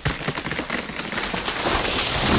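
A crackling, rushing sound effect of crashing destruction that swells steadily louder.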